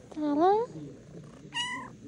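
A long-haired tabby cat meowing twice: a rising meow about a quarter second in, then a shorter, higher-pitched meow near the end.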